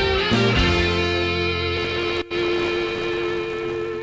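Background rock music with guitar, a held chord ringing through most of it; the music drops out for an instant a little past halfway.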